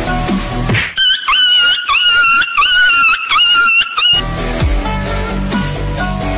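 Background music with a beat cuts out about a second in for a loud, high-pitched wavering squeal lasting about three seconds, then the music comes back.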